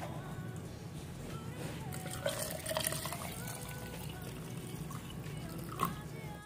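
Water being poured into a plastic blender cup, filling it up.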